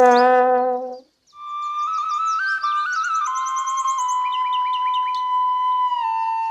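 A low held note ends about a second in; after a short gap, a slow flute melody of long held notes begins, with birds chirping and trilling high above it.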